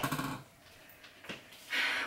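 Plastic bag of rice being handled: a sharp click at the start, a small tick about a second in, then a brief rustle of the plastic near the end.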